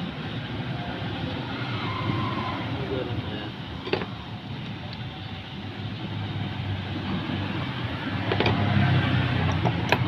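Steady low rumble of a motor-vehicle engine that grows louder near the end, with a sharp click about four seconds in and another about eight seconds in.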